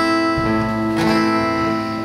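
Acoustic guitar chords strummed and left ringing, with fresh strums about half a second and a second in.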